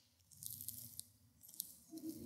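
Near silence with a few faint, sharp clicks, a small cluster about half a second to a second in and one more near the end.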